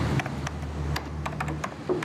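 Typing on a computer keyboard: irregular clicking keystrokes, several a second, over a low steady room hum.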